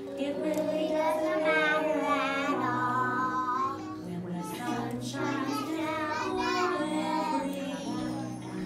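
A group of young children singing a song together over a musical accompaniment with held notes.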